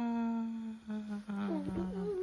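A voice humming one long, steady note that sinks slightly in pitch, joined about halfway by a higher voice that wavers up and down.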